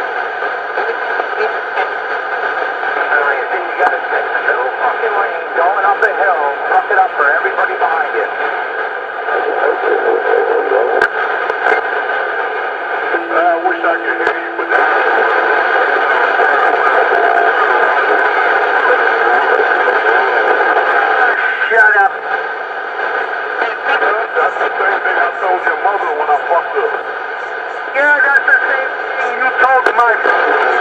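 Voices coming over a two-way radio's speaker, thin and band-limited under a constant hiss. A short steady tone sounds about thirteen seconds in.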